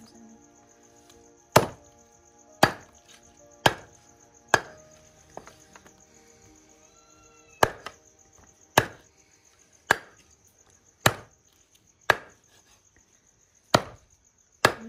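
Large broad-bladed knife chopping boiled chicken on a round wooden chopping block: ten sharp chops about a second apart, in two runs with a short pause between them.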